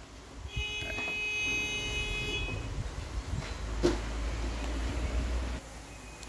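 Low rumbling handling noise as a handheld phone camera is moved about. About half a second in, a steady high electronic tone with several pitches comes in and lasts roughly two seconds. A single sharp click follows near the four-second mark.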